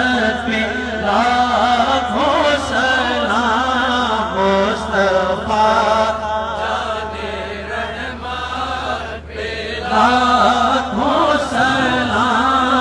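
A man's voice chanting a recitation in long, wavering melodic phrases, with a brief pause about nine seconds in.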